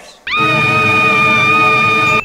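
A cartoon girl's long, high scream, held at one steady pitch from about a quarter second in.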